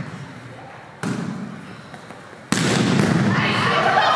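A volleyball struck by hand twice, about a second in and again louder about two and a half seconds in, each hit echoing around a large gym. Players' voices call out after the second hit.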